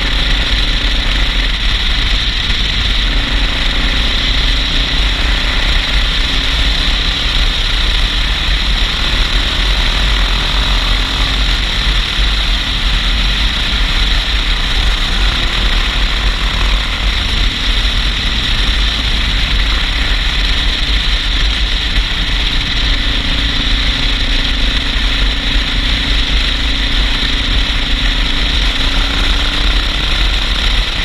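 Suzuki DR650 single-cylinder engine running at a steady cruise, under a constant rush of wind buffeting the helmet-mounted camera's microphone.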